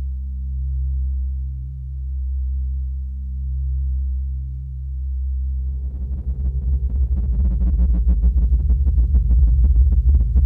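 Electronic music: a low synthesizer drone swelling and fading slowly, about once every second and a half. About five and a half seconds in, a fast pulsing synth layer joins and grows louder.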